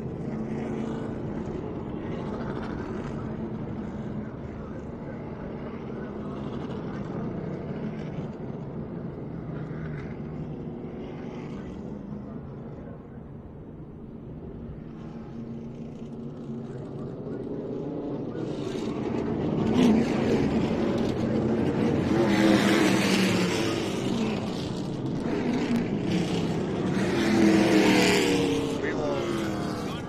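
Stock car V8 engines: a steady low drone of a car running slowly, then from about two thirds of the way in a pack of race cars passing under caution, the engine note swelling and falling with each pass, loudest near the end.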